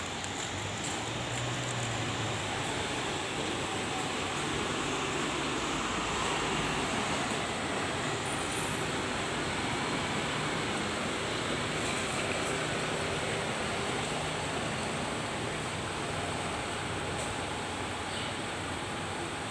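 Steady din of a bus interchange: buses idling and moving, heard as an even rushing noise with a faint low engine hum underneath.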